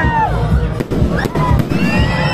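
Aerial fireworks shells bursting, with several sharp bangs in the second half, over music and crowd voices.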